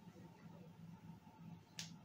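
Near silence with a faint low hum, broken by a single short, sharp click near the end.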